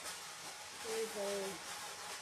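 A short voiced murmur about a second in, over a light rustle of artificial fern greenery being picked up and handled.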